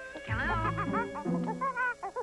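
A chimpanzee calling in quick, wavering hoots and squeals that swoop up and down in pitch, starting about a third of a second in, with music underneath.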